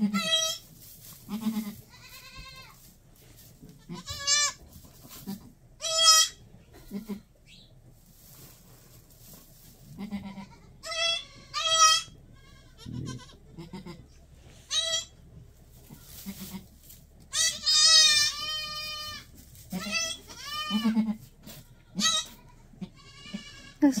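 A doe goat and her newborn twin kids bleating on and off. The calls are a dozen or so high, quavering bleats and short low calls, the doe talking to her kids for the first time.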